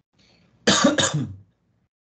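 A person clearing their throat: one short, noisy burst in two quick pushes, a little over half a second in.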